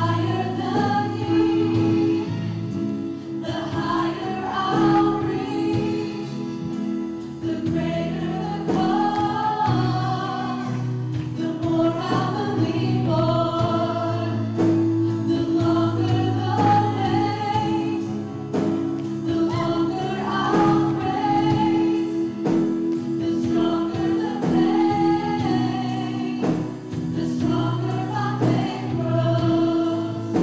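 A live worship band plays a gospel-style praise song: several men and women sing together over acoustic guitar, sustained low keyboard or bass chords and a steady beat.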